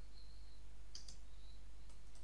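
A few faint clicks of computer keyboard keys being pressed, two close together about a second in and one near the end, over a low steady hum.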